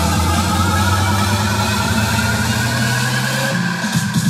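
Loud electronic dance music from a vinahouse remix: a held synth chord over a steady low bass note, with no clear beat, which breaks off about three and a half seconds in as a new section of the mix starts.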